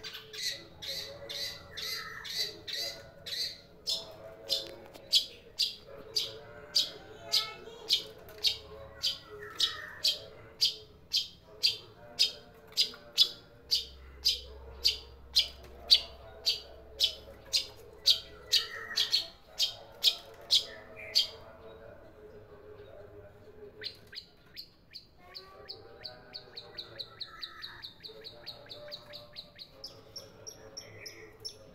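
Caged long-tailed shrike (cendet) giving a long series of loud, harsh calls, about two a second. After a short pause near two-thirds of the way in, it switches to a faster, quieter run of thinner notes.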